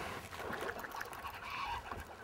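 Faint riverside ambience: an even low hiss of flowing river water, with a brief faint call near the end.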